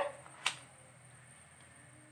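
One short, sharp click about half a second in, over a faint steady low hum.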